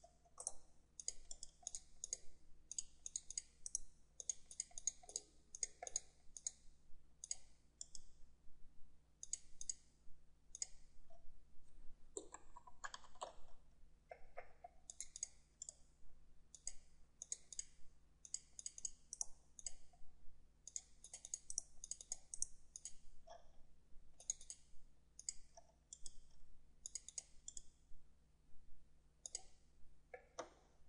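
Computer mouse clicking in quick runs of clicks with short pauses between, as lines are picked and trimmed in a CAD program.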